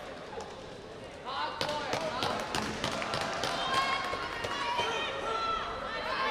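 Voices calling out and chattering in a large sports hall, with scattered sharp knocks and claps, starting about a second in.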